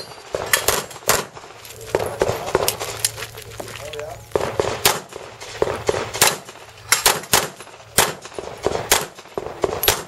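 Pistol shots fired rapidly throughout, about twenty sharp reports at an uneven pace, several in quick pairs.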